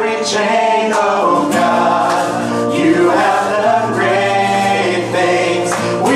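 Worship band singing a contemporary Christian song live: male and female voices together over acoustic guitar.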